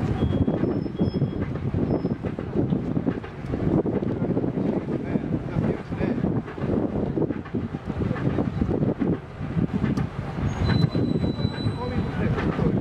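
Heavy transport vehicle moving a W7 series Shinkansen car slowly across the quay, giving a low, uneven rumble.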